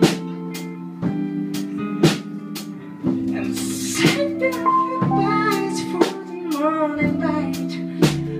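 Live soul-jazz band playing a slow ballad: strummed hollow-body electric guitar chords over keyboard, with sharp drum hits about once a second. A wavering melody line rises above the band from about four seconds in.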